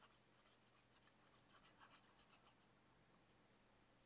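Very faint scratching of a purple pen tip on colouring-book paper: a run of soft, short strokes in the first two and a half seconds, then near silence.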